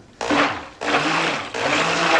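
Immersion stick blender run in three short pulses in a plastic cup of raw soap batter, blending in the colourant.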